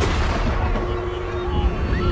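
Cinematic trailer sound design: a deep low rumble carrying on from a heavy impact, with a single held drone tone coming in about a second in.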